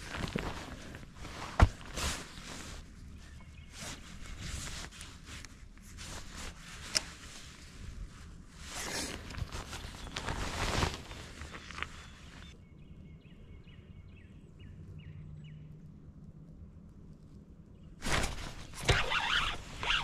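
Scattered knocks, clicks and rustling from handling gear and moving about on a fishing boat's carpeted deck. The noises stop about two-thirds of the way through, leaving a few seconds of near-quiet with a faint low hum, before loud rustling starts again near the end.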